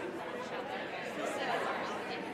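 Many people talking at once in small groups: a steady hubbub of overlapping conversations with no single voice standing out.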